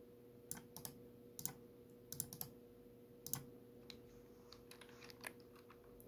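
Faint keystrokes on a computer keyboard: about a dozen slow, irregular taps as a short file name is typed, over a faint steady hum.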